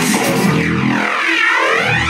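Electronic breakbeat music played loud in a DJ set. About half a second in, the bass and drums drop away under a swirling sweep effect that peaks around a second and a half in, and the full beat comes back near the end.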